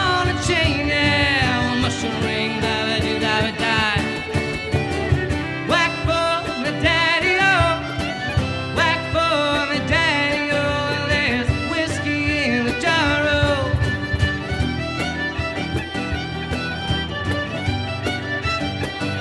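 Traditional Irish band music: a fiddle carries the melody with quick ornamented notes over strummed acoustic guitar and a cajón beat.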